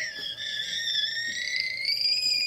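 A long, high-pitched vocal squeal held at one slightly wavering pitch, made during a big, hard kiss on the cheek.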